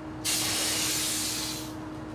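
A sudden airy hiss lasting about a second and a half, starting sharply and fading out.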